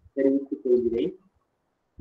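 A man's voice in drawn-out, sung-sounding syllables for about a second, then a pause.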